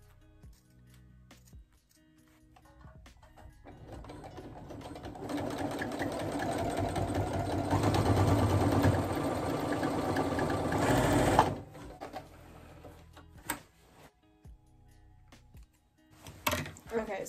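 Brother electric sewing machine stitching a seam in denim: the motor builds up over a few seconds, runs fast and steady, then stops abruptly about eleven seconds in.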